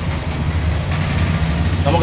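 Steady low hum of an idling engine during a pause in a man's speech, his voice starting again right at the end.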